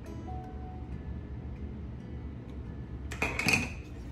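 Soft background music. About three seconds in, a short, louder handling noise as the stamped wooden block is lifted from the table.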